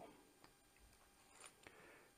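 Near silence: room tone with a few faint clicks from plumbing fittings being handled.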